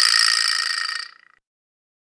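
A bright, high shimmering ring, like an editing sound effect or a final cymbal, fading out over about a second after background music stops, then dead silence.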